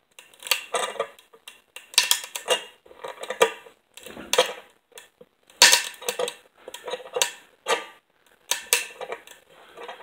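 Long-grain pine board crackling under a C-clamp's load: a run of sharp, irregular cracks, about two a second, with the loudest a little past halfway. These are its fibers beginning to break on the underside, the little warning the wood gives before failure.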